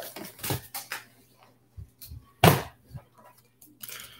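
Pokémon trading cards being handled and set down. There are a few short taps and rustles, and the sharpest comes about two and a half seconds in.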